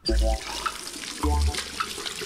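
Sink faucet turned on, water running steadily from the tap and splashing over hands being washed under it. Two short, loud low tones sound over the water, one at the start and one just past halfway.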